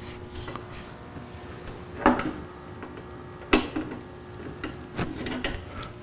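Felt-tip marker scratching across paper in short strokes near the start, then a few light knocks about two and three and a half seconds in.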